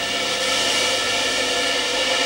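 Military band music: a held chord of several sustained notes with a cymbal roll swelling underneath.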